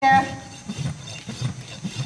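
Hoof rasp filing a horse's hoof wall in quick, repeated strokes.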